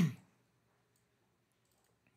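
Near silence of room tone with a few faint computer clicks, the kind made at a desk while switching from a code editor to a web browser.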